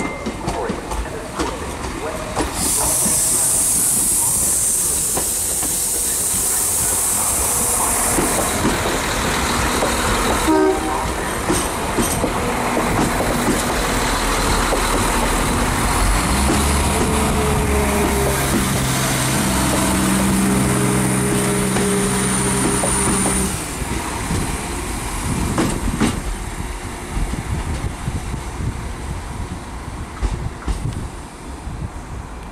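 Iarnród Éireann 22000 Class ICR diesel multiple unit arriving and running past close by. A loud high hiss lasts about six seconds from a few seconds in, wheels click over rail joints, and steady low droning tones sound for several seconds in the second half before the level drops as the train slows.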